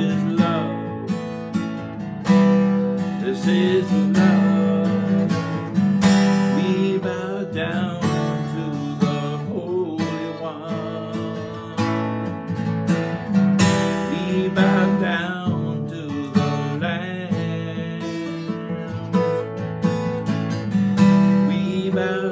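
Acoustic guitar strummed in a steady rhythm, ringing chords played as an instrumental passage.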